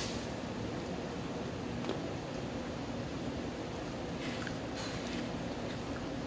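Soft chewing and mouth sounds of someone eating, a few short crunchy bits between stretches of steady room hum.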